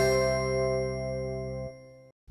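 The closing chord of a TV programme's logo jingle: a bell-like chord rings out and fades, its low notes cutting off near the end.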